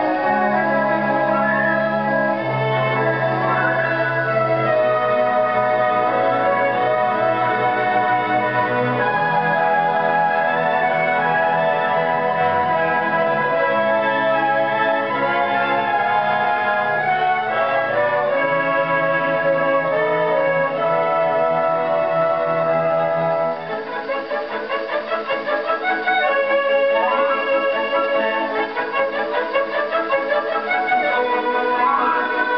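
Orchestral overture played from a 78 rpm Columbia record on an EMG acoustic gramophone, with the record's limited top end. Full, long-held chords give way about 23 seconds in to lighter, quicker figures in the strings.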